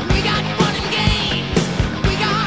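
Rock music with guitar and a steady drum beat.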